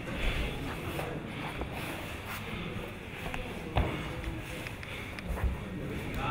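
Grappling wrestlers shifting and scuffling on foam gym mats over steady background room noise, with three short thumps, the loudest a little past the middle.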